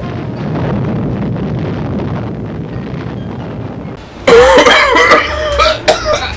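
A low, rushing rumble for about four seconds, slowly fading, after a smoky blast. Then men cough hard from about four seconds in.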